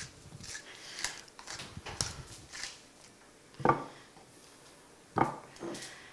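Wooden pepper mill being twisted by hand, a series of short grinding rasps about twice a second, then two louder short sounds in the second half.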